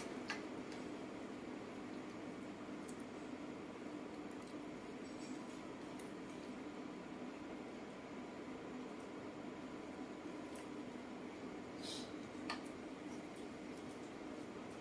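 Quiet room tone with a steady low hum, broken by a few faint clicks: one just after the start and two more about twelve seconds in.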